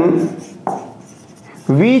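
Marker writing on a whiteboard: faint rubbing strokes, with one sharp tap about two-thirds of a second in.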